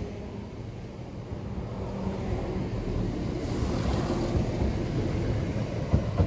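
Electric multiple-unit train (Southern Class 377 Electrostar) running past close by, a steady rumble of wheels and running gear that grows louder about two seconds in.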